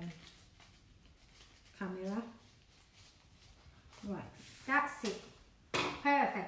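A woman's voice in short utterances, about two seconds in and again from about four to five seconds, with quiet room tone between them. A brief noisy burst comes just before the end.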